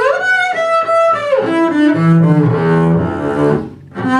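Solo double bass played with the bow: a slide up into a high note, then a run of notes stepping down into the low register. The phrase dies away briefly just before the end.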